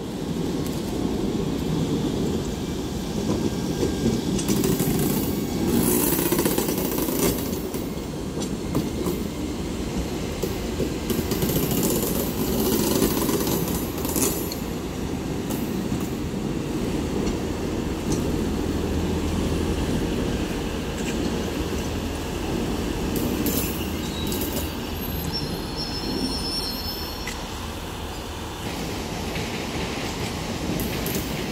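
Electric multiple-unit commuter train pulling out and passing close by, its wheels rumbling and clattering over the rails. A thin high squeal from the wheels comes near the end as the train runs off along the curve.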